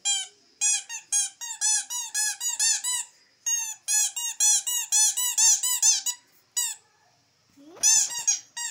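Rubber squeaky toy squeezed over and over in quick succession, about three squeaks a second, each squeak rising and falling in pitch. There is a short break about three seconds in, and one last squeak a little after the run ends.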